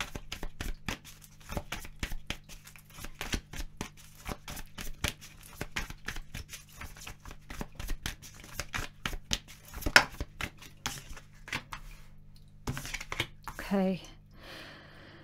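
A deck of tarot cards shuffled by hand: a long run of quick, soft card slaps and flicks, with one sharper snap about ten seconds in.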